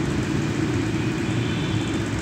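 Steady low rumble of a motor vehicle engine running, heard amid street traffic noise.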